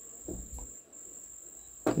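A faint, steady, high-pitched whine over low background hiss, briefly dropping out about a second in. There are two soft, low sounds early on.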